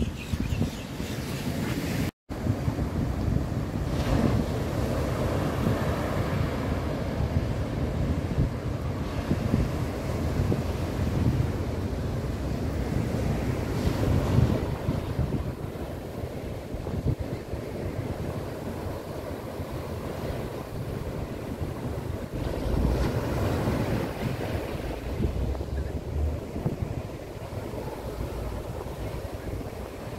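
Ocean surf breaking on the beach under heavy wind buffeting the microphone, with slow swells in level as waves come in. The sound drops out for a moment about two seconds in.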